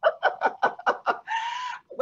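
Women laughing: a quick run of short laughs, then one high drawn-out note near the end.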